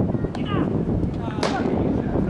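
Two sharp knocks of a rubber baseball impact: a faint one early and a louder, ringing crack about one and a half seconds in, with players shouting.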